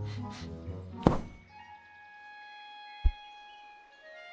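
Cartoon sound effects of a big animated rabbit climbing out of its burrow over an orchestral score: a sharp knock about a second in, then a short, dull low thud about three seconds in, with held music notes in between.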